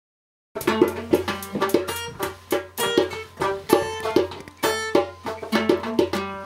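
Steel-string acoustic guitar strummed in a steady, quick rhythm of chords, starting about half a second in.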